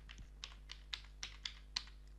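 Computer keyboard being typed on: a quick run of separate key clicks, about six a second, over a steady low hum.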